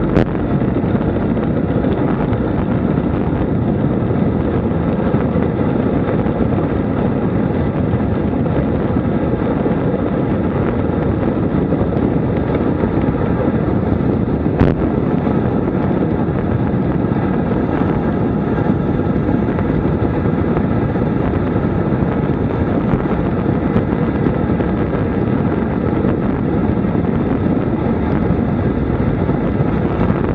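Wind rushing over the camera microphone and tyre noise from a road bike coasting fast down a descent, a steady loud rush. Two sharp clicks come through, one just after the start and one about halfway.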